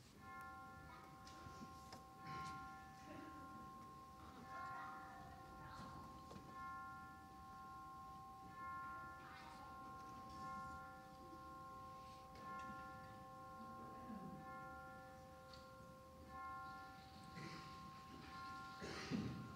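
Faint, slow instrumental music on a keyboard: soft chords of several notes held steadily for a few seconds each before changing, with the odd faint knock and rustle of people moving in the room.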